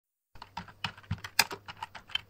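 Keyboard typing: a quick run of about ten uneven key clicks, starting about a third of a second in, laid in as a sound effect while text is typed out on screen.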